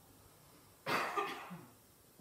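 A single cough about a second in, starting sharply and trailing off over about half a second, in an otherwise near-quiet pause.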